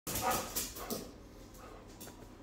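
Terriers playing and barking: about three short barks in the first second.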